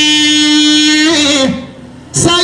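A man chanting into a microphone, holding one long steady note that slides down and fades out about a second and a half in, followed by a short pause.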